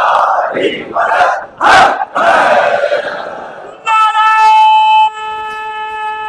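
A crowd of men shouting slogans in loud, ragged bursts. A little under four seconds in, a single long, steady, high held tone with many overtones cuts in and is still sounding at the end.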